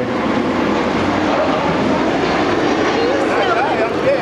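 Steady, loud noise of a passing vehicle masking the street, with a faint voice near the end.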